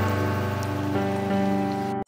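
Water gushing steadily from the open end of a PVC pipe onto soil, a rushing hiss, with background music of sustained notes underneath; both cut off abruptly at the end.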